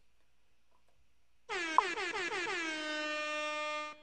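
Air horn sound effect: one long blast starting about a second and a half in, its pitch dropping at the onset and then holding steady until it cuts off just before the end.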